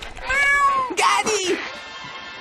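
Cartoon snail's meow: one long cat-like call that rises and then falls, followed about a second in by a shorter, noisier call that slides downward.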